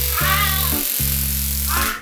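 A boy screams in a wavering voice over a loud hiss that starts abruptly and cuts off near the end, acting out being electrocuted; steady background music runs underneath.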